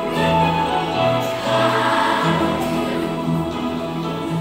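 Children's choir singing with instrumental accompaniment.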